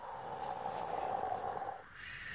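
A person making one long pretend snore, about two seconds, that stops shortly before the end.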